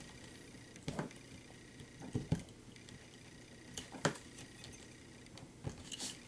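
Nylon zip ties being pulled tight by hand around a small FPV board camera on a multirotor frame: a handful of short plastic clicks and handling rustles spread out over a few seconds, the loudest about four seconds in.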